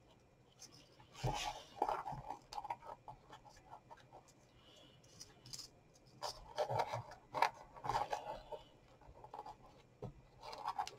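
Organza ribbon rustling and sliding against a card box as it is wrapped and tied into a bow. The sound is soft and irregular scraping and rubbing, busiest about a second in and again from about six to eight and a half seconds.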